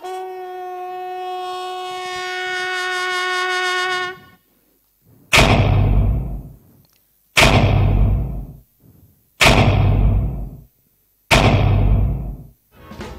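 Jazz band music: a horn holds one long note that swells and cuts off about four seconds in. Then the band plays four loud accented hits about two seconds apart, each with a deep bass thud and a cymbal-like ring dying away after it.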